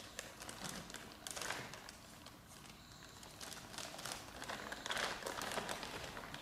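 Clear plastic bag crinkling and rustling as a small child handles it and rummages through the plastic toy letters inside, in two spells of quick small crackles.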